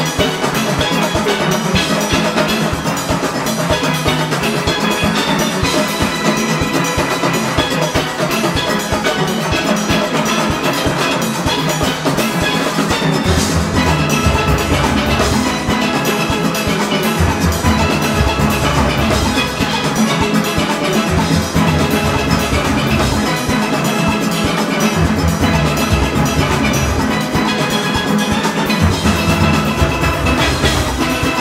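A large steel orchestra playing a fast Panorama-tempo arrangement: many steelpans with the engine room's drum kit, congas and cymbals driving the beat. Deep bass notes grow strong about halfway through.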